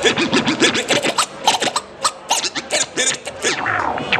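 Turntable scratching: a DJ's hand drags a vinyl record back and forth under the stylus in quick, choppy strokes that sweep up and down in pitch. A longer falling sweep comes near the end.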